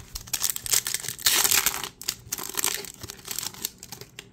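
Baseball card pack wrapper being torn open and crinkled by hand, a crackly rustle that peaks about a second and a half in and fades near the end.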